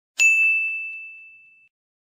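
A single bright ding: a bell-like chime struck once, its clear high tone ringing out and fading over about a second and a half, as used for an outro transition.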